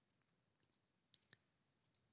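Near silence with two faint computer mouse clicks in quick succession a little past halfway.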